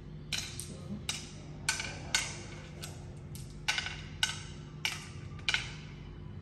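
Hard Ayo seeds dropped one at a time into the pits of a carved wooden Ayo board, each landing with a sharp wooden click. About nine clicks at an uneven pace, with a pause about halfway through as the next handful is taken up.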